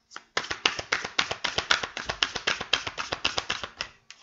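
A tarot deck being shuffled by hand: a rapid, even run of card clicks, about eight a second, stopping just before the end.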